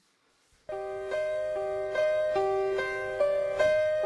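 Grand piano playing a slow solo ballad intro, starting about three quarters of a second in after a brief silence. Sustained, overlapping notes ring one after another, about two a second.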